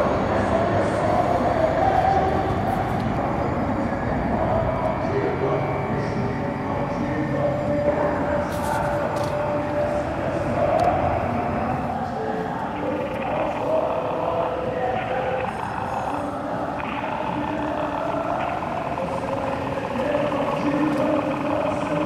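People's voices talking continuously, with no pauses.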